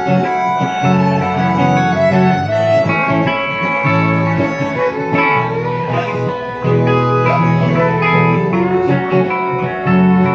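Live band playing instrumental music on electric guitars and violin (fiddle), with sustained low notes underneath and the fiddle and guitar lines on top.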